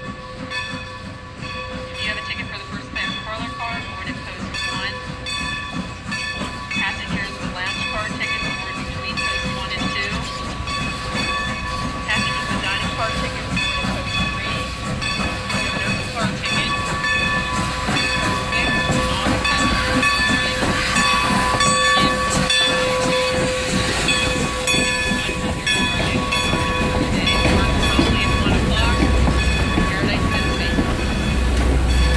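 Steam locomotive and its passenger coaches rolling slowly into the station, growing louder as they near. A steady high tone runs throughout, and a low rumble from the wheels on the rails builds as the coaches pass near the end.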